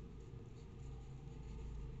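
Pencil writing on a paper worksheet: faint scratching strokes of the lead on the paper over a low steady room hum.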